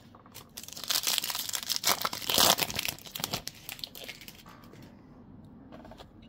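Foil wrapper of a 2024 Topps Chrome trading-card pack crinkling as it is torn open. The crackle is loudest about two and a half seconds in, then thins to a few light rustles.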